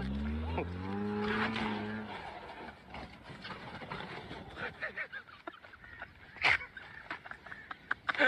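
A car's engine revving hard at the start, then the car running on loose dirt with laughter over it. A single sharp bang comes about six and a half seconds in, as the car crashes.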